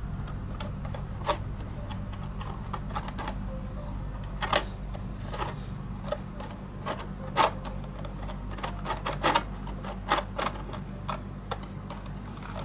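Glossy sheet covering a thick cut-out paper fish crinkling and crackling as fingers press and smooth it down: scattered, irregular sharp clicks over a steady low hum.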